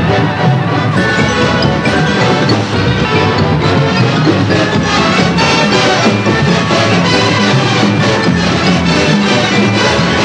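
Drum and bugle corps playing loud and steady: a hornline of brass G bugles over marching snare drums, unamplified.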